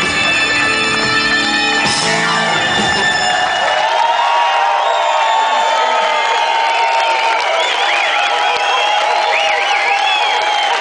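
Live smooth jazz band with saxophones and guitar finishing a tune: the full band plays, hits a final accent about two seconds in, then the bass and drums drop out about four seconds in while held notes ring on. The crowd cheers and whoops over the close.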